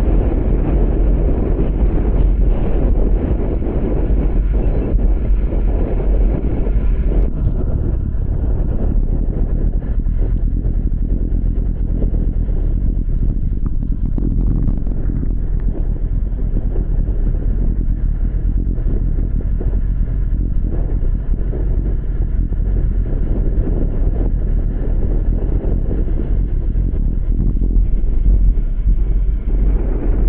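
Wind buffeting the microphone of a bicycle-mounted camera while riding at race speed on a wet road: a steady, loud low rumble with a hiss of road and tyre noise over it.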